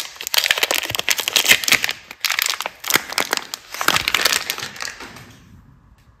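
A Lifebuoy soap bar's printed wrapper crinkling and crackling as hands peel it off the bar, in quick irregular crackles that stop a little after five seconds in.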